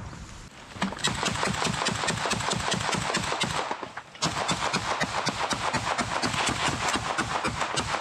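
Rapid automatic gunfire, shot after shot in a nearly unbroken run, with a short break about four seconds in.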